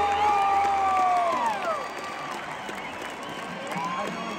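Arena crowd cheering, whooping and whistling as a live rock song ends. The band's last low note fades out in the first second or so; a long whoop falls in pitch, and the cheering settles to a lower level after that.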